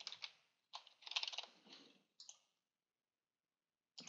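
Faint computer-keyboard typing: a word tapped out in a short run of keystrokes, quickest about a second in, stopping about two and a half seconds in.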